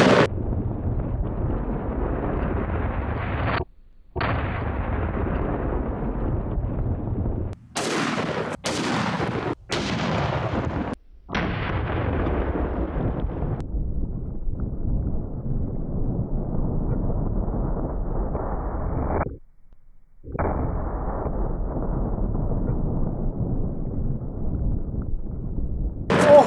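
Slowed-down sound of a 460 S&W Magnum revolver shot and its impact, stretched into a long, deep boom. It comes in several drawn-out stretches separated by brief breaks, with a few sharper cracks between about eight and eleven seconds in.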